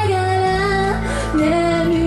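Live band music: a woman singing long held notes into a microphone over electric guitar and drums, her voice stepping down to a lower held note about halfway through.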